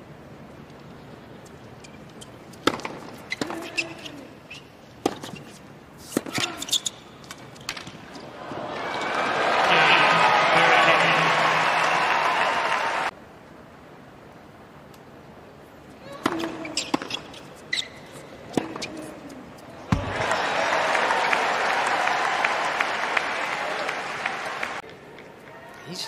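Tennis ball struck back and forth by racquets in rallies on a hard court, sharp pops about a second apart. Twice a stadium crowd breaks into loud cheering and applause after a point; the first burst cuts off suddenly.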